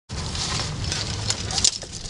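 Carabiners and cams on a trad climbing rack clinking lightly as the climber handles his harness, a few sharp metallic clicks over a steady background hiss.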